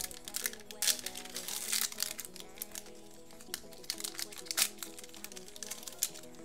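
A plastic trading-card pack wrapper being crinkled and pulled open by hand, in short crackling bursts, loudest about a second in, near two seconds and shortly before the end. Background music plays under it.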